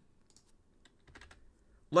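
Faint keystrokes on a computer keyboard: a handful of scattered clicks.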